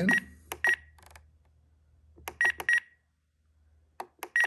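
Short electronic beeps from a Spektrum NX10 radio transmitter as its roller is scrolled and pressed to delete the letters of a preflight-item label. A few beeps come near the start, then a quick run of three about two and a half seconds in.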